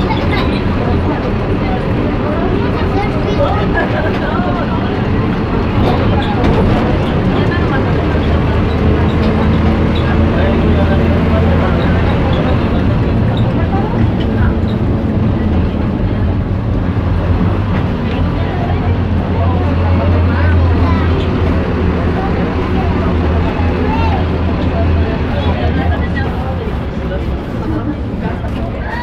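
City bus engine running with a steady low drone heard from inside the crowded passenger cabin, growing louder through the middle stretch, with passengers chattering over it.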